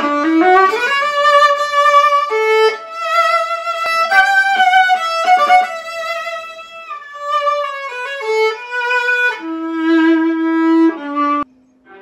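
Acoustic viola bowed solo: a melodic line with sliding shifts up into some notes, stopping briefly in a short pause near the end.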